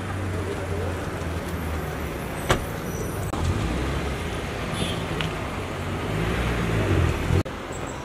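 Car engine running steadily close by, with one sharp clunk about two and a half seconds in as the car door shuts. The engine grows louder near the end, then the sound cuts off suddenly.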